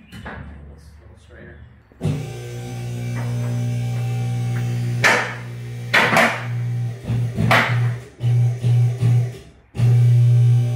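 Electric hydraulic pump of a two-post car lift running with a steady hum, starting abruptly about two seconds in, then switched on and off in short bursts near the end. The lift arm is pressing up against a bent side-by-side roll cage to straighten it.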